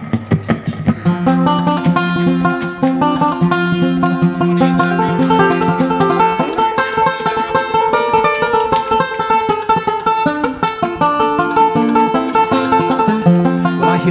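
Live acoustic string band playing the instrumental opening of an upbeat folk-rock song: banjo and acoustic guitar picking a steady rhythm over upright bass. The band kicks in about half a second in, just after a short laugh.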